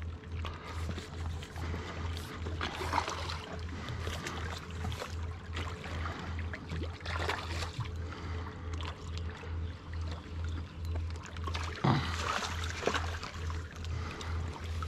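A steady low throb pulsing several times a second, like a distant engine, with scattered light water splashes and rustles as a hooked fish is brought to the landing net.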